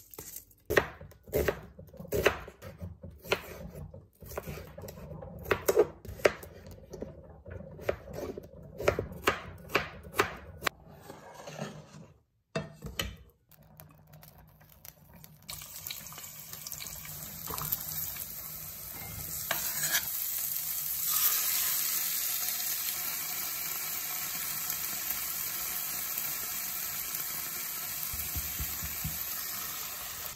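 Cooking at a stove: for about twelve seconds, a run of sharp clinks and scrapes of a utensil against a pot. After a short break, onions start sizzling in hot oil in a pot, a steady hiss that grows louder about twenty seconds in, with occasional stirring.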